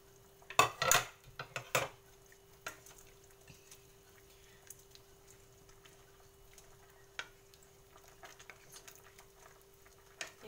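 Kitchen utensils knocking sharply against a cooking pot several times in the first two seconds, then light, scattered taps and scrapes of a wooden spatula stirring carrots and green beans in the pot.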